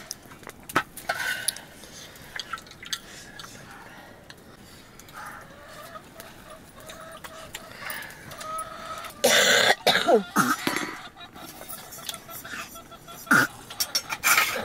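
Scattered light clinks and knocks of steel plates and cups during a meal, with a loud cough about nine to eleven seconds in.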